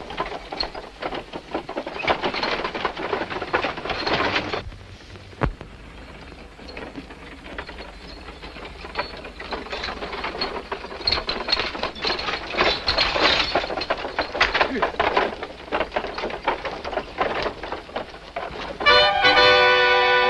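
Hoofbeats of several horses galloping on dry ground, a dense irregular clatter that drops back after about five seconds and builds again. Near the end, brass-led orchestral music comes in.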